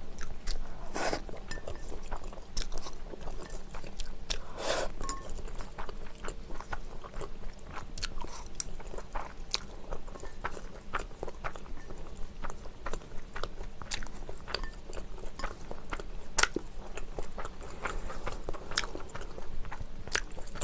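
Close-miked chewing of Carbo Buldak stir-fried noodles: irregular wet mouth clicks and smacks that keep on without a break.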